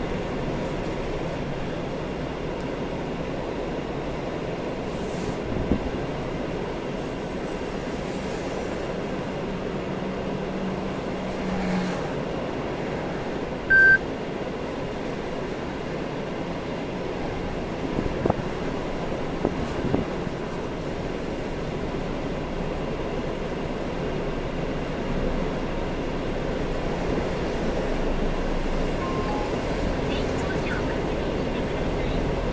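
Car cabin noise while creeping along in slow expressway traffic: a steady rumble of engine and tyres. A single short electronic beep sounds about halfway through.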